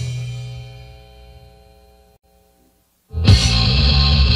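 A hardcore punk song ends: the last bass note rings out and fades away over about two seconds, then after a moment of silence the next song starts abruptly with bass guitar and a drum kit with crashing cymbals.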